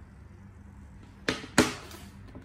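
Two sharp knocks about a third of a second apart, near the end, as smartphones are set down on a hard tabletop; the second knock is the louder. A faint low hum runs underneath before them.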